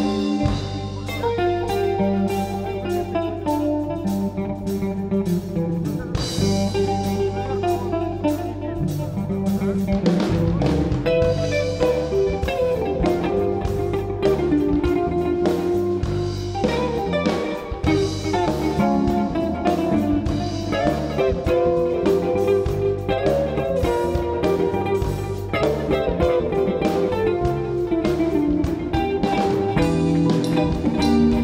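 Live instrumental jazz-blues band: a semi-hollow electric guitar plays lead lines over electric bass and drums. The bass holds long low notes at first, then moves note by note from about ten seconds in.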